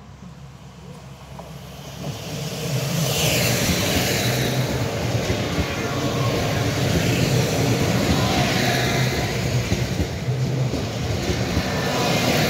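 ŽSR class 861 diesel multiple unit passing close by. It grows louder over the first few seconds as it approaches, then runs past with a steady engine drone and rushing wheel-on-rail noise that swells several times as the bogies go by.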